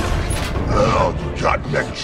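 Film sound effects of robot machinery creaking and grinding, mixed with a voice.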